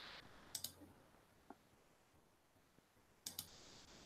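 Faint computer mouse clicks in a quiet room: a quick pair of clicks about half a second in, a single light click near the middle, and another quick pair near the end.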